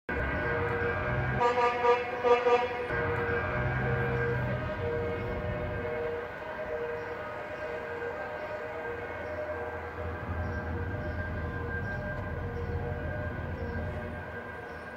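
Air horns honking from a passing convoy of trucks and emergency vehicles, with a louder run of blasts about a second and a half in, over a steady horn tone that pulses about twice a second and the rumble of traffic.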